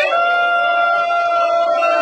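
A voice holding one long high note steady, over the noise of an agitated crowd in an aircraft cabin.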